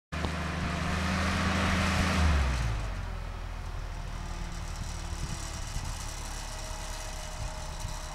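Boom lift's engine running fast with a hiss, then its revs dropping to a steady idle about two and a half seconds in.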